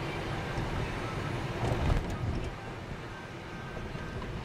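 Car driving along a road, heard from inside the cabin: a steady low rumble of engine and tyre noise, with a brief louder thump a little before two seconds in.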